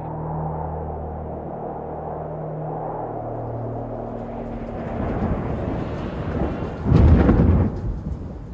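A low sustained musical drone fades into rumbling thunder, with a loud thunderclap about seven seconds in.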